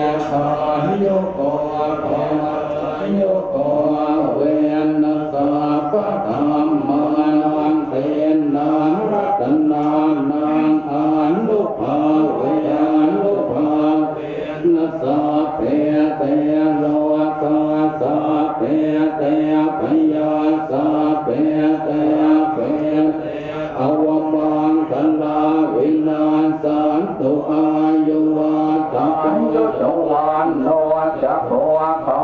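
Thai Buddhist monks chanting together in unison, a continuous recitation held mostly on one steady pitch with small rises and falls between syllables.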